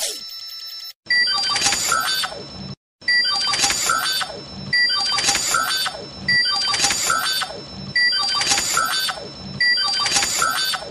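Ben 10 Omnitrix alien-selection sound effect, repeated six times about every second and a half. Each time there is a short beep, then an electronic sweep with many quick clicks and a steady high tone over it.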